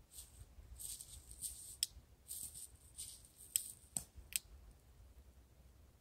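Irregular rustling and crackling with a few sharp clicks, dying away after about four and a half seconds.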